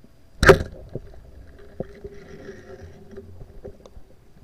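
Speargun firing underwater: one sharp, loud crack about half a second in, followed by scattered fainter clicks and a faint steady hum.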